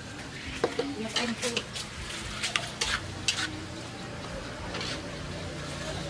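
Metal spatula scraping and knocking irregularly against a metal wok while chopped fish is stir-fried, over a steady sizzle of frying.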